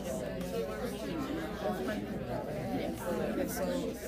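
Indistinct voices of students talking in a classroom, unclear chatter without distinct words.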